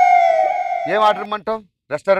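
A long, loud, high held tone that drifts slightly downward and stops about a second in, followed by a man speaking briefly.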